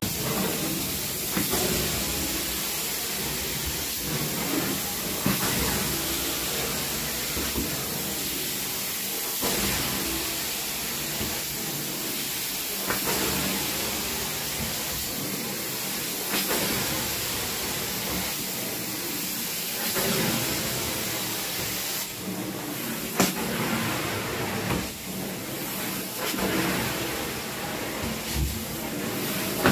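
Carpet-cleaning extraction wand running over carpet: a steady rushing hiss of suction and water spray, with a brief louder surge every three to four seconds as the wand is worked in passes.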